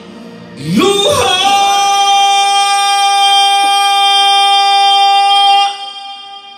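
A woman singing a ballad: her voice slides up about half a second in and holds one long note for about four seconds, then cuts off shortly before the end.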